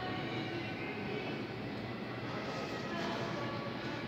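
Steady background noise with a faint hum, and no distinct event.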